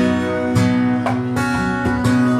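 Steel-string acoustic guitar played live, strummed chords ringing in a steady rhythm.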